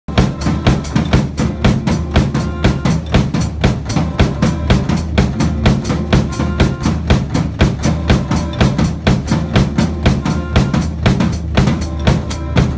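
Acoustic drum kit played in a steady groove, with bass drum, snare and cymbals keeping an even beat. A backing track with a bass line plays underneath.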